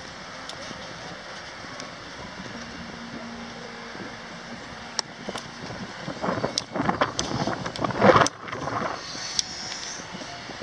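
Outdoor rush of wind on a handheld camera's microphone, steady at first, then irregular louder buffets and a few sharp knocks from about six to nine seconds in as the camera is swung about.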